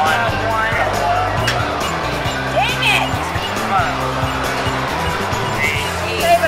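Arcade din: electronic music from the game machines, steady throughout, with indistinct voices and short electronic sound effects over it.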